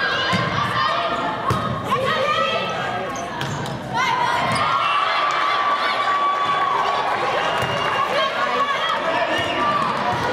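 Volleyball in an echoing gymnasium: players and spectators shouting and calling, with sharp slaps of the ball being struck or bounced. A long, drawn-out shout runs from a little before halfway to about two-thirds through.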